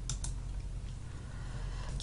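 Two quick computer clicks near the start, then a steady low hum.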